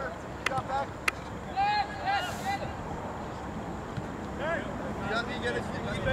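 Distant voices of players calling out across a soccer field, in short shouts over steady outdoor background noise, with two sharp knocks about half a second and a second in.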